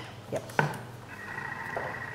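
Thermomix TM6 starting its sauté program at 120 °C: a light click about half a second in, then from about a second in a faint steady motor whine as the blade begins stirring.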